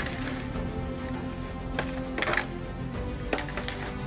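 Background music with sustained tones throughout. A few brief scrapes and clicks, about two and three seconds in, come from a fork stirring sauced meat cubes in an aluminium foil pan.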